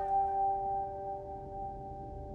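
Background score: a held, bell-like chord of a few steady tones, slowly fading.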